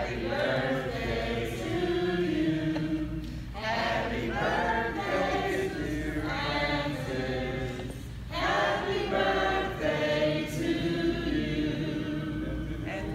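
A congregation singing together as a group, in sung phrases with short breaks about three and a half and eight seconds in.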